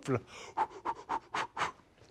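A man's short, sharp puffs of breath, about five in quick succession.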